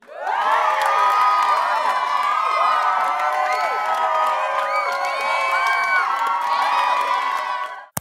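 Crowd cheering and whooping, many voices at once with rising and falling shouts. It starts suddenly and cuts off just before the hosts speak.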